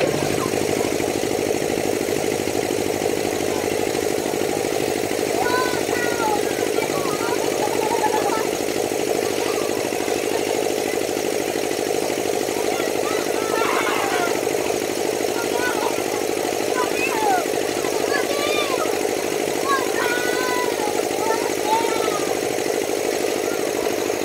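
Amusement ride's drive motor starting up and running with a loud, steady hum as the rotating kangaroo ride turns. Voices call out now and then over the hum.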